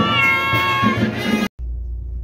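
A girl's high-pitched excited squeal, rising and then held for about a second and a half over music with a beat. It cuts off suddenly, and a low steady hum follows.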